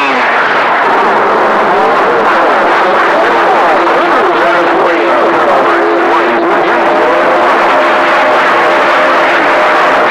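CB radio receiving skip on channel 28: several garbled voices talking over one another through static, with a steady low heterodyne whistle from beating carriers, joined by a higher one near the end.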